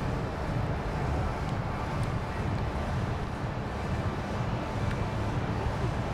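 Steady low rumble of outdoor background noise with wind on a clip-on microphone; no distinct event stands out.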